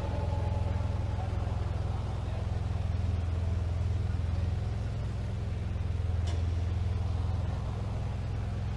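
A steady low hum with faint room noise behind it, picked up on an open microphone.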